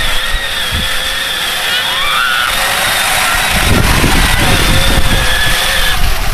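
Electric drive motors of a battery-powered ride-on John Deere Gator toy whining steadily as it drives, with low rumbling joining in about halfway through.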